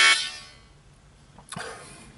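A harmonica chord on a G harp, held and then fading out about half a second in, followed by low quiet.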